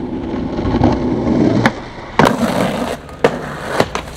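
Skateboard wheels rolling with a rumble over stone paving slabs, broken by sharp clacks of the board: one about a second and a half in, a louder one just after two seconds followed by more rolling, and two lighter knocks near the end.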